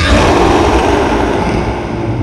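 Harsh noise music: a loud wall of dense noise, from deep rumble to high hiss, bursts in suddenly at the start. Its high hiss then slowly thins while a low rumbling drone carries on underneath.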